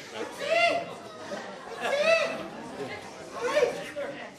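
Speech only: untranscribed voices talking, heard as chatter.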